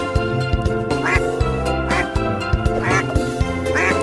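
Duck quacks, three short calls about a second in, near three seconds and near the end, over background music with a steady beat.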